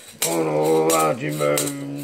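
A man's voice chanting a long, low, nearly steady note, over a regular clicking beat of about three clicks a second, after a short gap at the very start.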